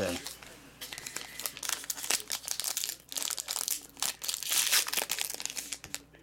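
Foil wrapper of a trading-card pack crinkling as hands handle it and pull it open, a dense run of crackles starting about a second in.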